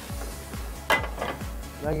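A single sharp metal clank of a cooking pot about a second in, as the pot of soup is put back on the stove burner, over quiet background music.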